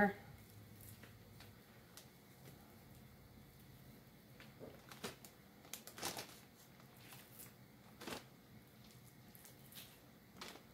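Soft, occasional rustles and crinkles of a plastic zipper bag as thin slices of raw beef are dropped into it one piece at a time, with a few brief sounds about halfway through and otherwise quiet.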